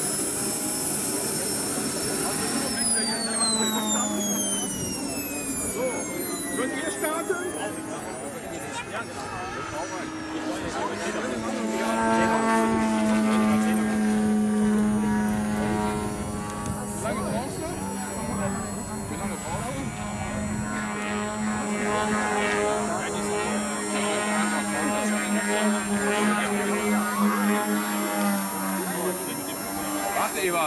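Radio-controlled Extra 330SC model aerobatic plane flying overhead. Its high engine note falls in pitch a few seconds in, then settles into a steady, lower drone for most of the rest.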